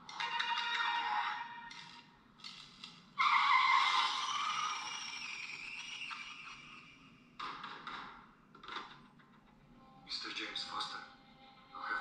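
Film trailer soundtrack: music mixed with short bursts of dialogue. About three seconds in, a loud sudden sound cuts in and fades away over a few seconds.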